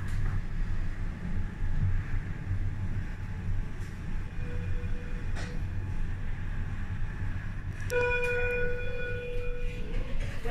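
Schindler lift car travelling, heard from inside the glass-walled car as a steady low hum and rumble, with a light click about halfway through. Near the end a steady chime tone sounds for about two seconds as the car reaches its floor.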